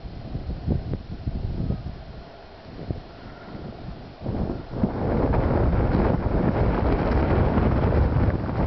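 Wind buffeting the camera microphone in gusts, turning into a loud, continuous rumble about five seconds in.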